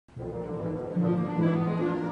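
Orchestral music begins, with brass holding a steady low note under shifting higher parts, growing louder about a second in.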